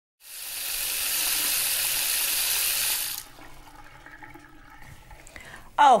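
Water running steadily from a tap for about three seconds, then shut off abruptly.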